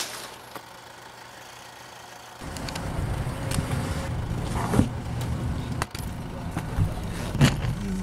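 Inside a car: the steady low rumble of the running car, starting about two and a half seconds in after a quiet opening, with a few short knocks and clicks.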